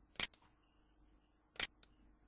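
Computer mouse button clicked twice, about a second and a half apart, each a quick double tick of press and release.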